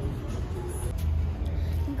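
A steady low rumble under an even outdoor noise, with faint singing voices trailing off near the start.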